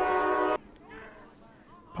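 Stadium goal horn sounding one steady held blast, signalling a home-team goal, that cuts off suddenly about half a second in.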